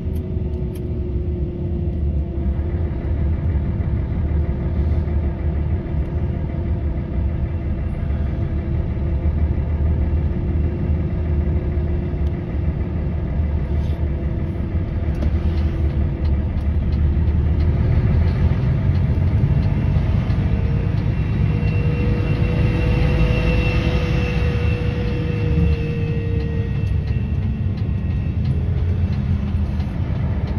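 Concrete mixer truck's diesel engine and road noise heard from inside the cab while driving: a steady low rumble. About twenty seconds in, a pitched whine rises, then fades again.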